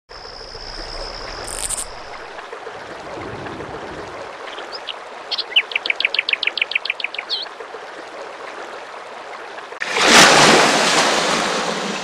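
Birds calling over a steady rushing background: a long high whistle at the start, then a rapid trill of about a dozen quick falling notes around six seconds in. Near the end a loud rushing noise swells up and slowly fades.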